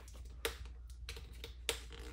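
Light plastic clicks and taps from a plastic slime can and its lid being handled, a sharp click about half a second in and another near the end, over a low steady hum.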